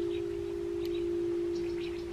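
Quartz crystal singing bowl ringing on after being played, one steady pure tone slowly dying away.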